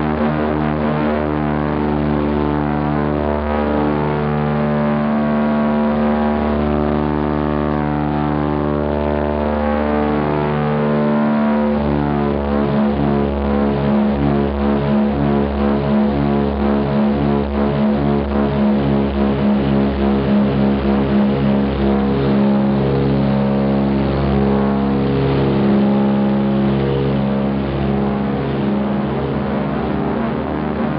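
Twin radial piston engines of a DC-3 Dakota running at high power through the take-off and climb, heard from the cabin as a steady drone. About ten seconds in the pitch shifts, and for several seconds after that the sound throbs with a regular pulse.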